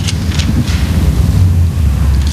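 Steady low rumble on the close pulpit microphone, noise from breath or handling rather than from the room, with a few faint rustles over it.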